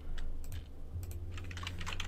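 Computer keyboard typing: irregular key clicks over a low, steady hum.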